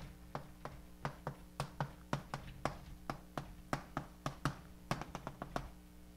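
Chalk writing on a blackboard: a quick, irregular run of sharp taps and clicks as the stick strikes and drags across the board, over a steady low room hum.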